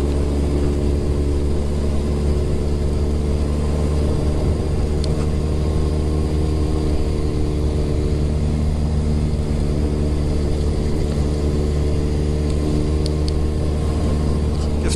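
Suzuki Hayabusa motorcycle's inline-four engine running at a steady cruising pace while ridden, holding an even, unchanging note.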